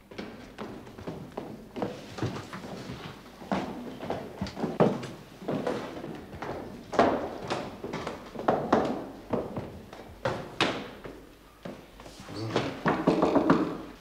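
Footsteps coming down a stairwell and a series of irregular knocks and thumps at a wooden door, growing denser and louder near the end.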